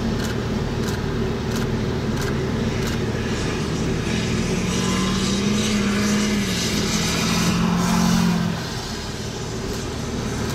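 A car passing on a wet highway: an engine and tyre hum with a hiss of spray builds from about three seconds in, peaks near eight seconds, then falls away. A steady low rumble of wind runs underneath.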